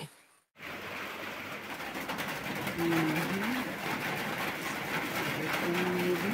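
Steady rain, a dense even hiss that starts about half a second in after a moment of silence. A faint short low tone is heard twice, about three seconds apart.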